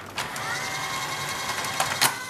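Sanyo VTC5000 Betamax VCR's tape-threading mechanism running on its single motor and belt: a steady mechanical whir with a faint whine, ending in a couple of clicks near the end. It is going like the clappers, as it should on a new belt and idler tyre.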